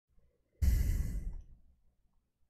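A man's sigh or heavy exhale close into the microphone, starting abruptly about half a second in and fading away within a second.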